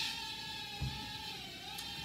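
Holy Stone HS190 mini quadcopter's small motors and propellers whining steadily as it takes off on the takeoff button. The pitch dips slightly and comes back up about one and a half seconds in.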